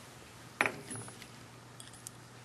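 A single light metallic clink about half a second in, followed by a few small clicks, as steel digital calipers are handled and set against the steel pulley on the lathe.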